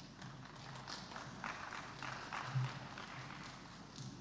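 Light, scattered audience applause: many individual hand claps.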